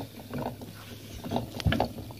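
Hamster scurrying in its round plastic exercise enclosure: faint scattered clicks and knocks, with a low thump near the end.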